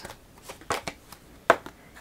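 A deck of oracle cards being shuffled and a card drawn by hand: a few short card flicks, the sharpest about one and a half seconds in.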